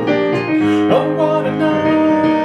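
Digital piano playing sustained chords under a melody line, with new notes struck every half second or so.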